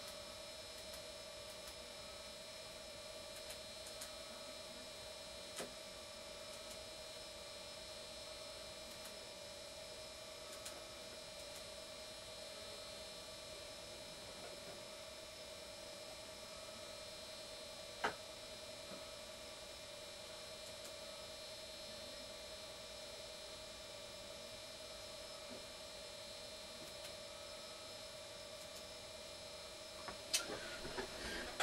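Faint steady electronic hum and whine made of several fixed tones, with a few faint clicks and one sharper click about 18 seconds in.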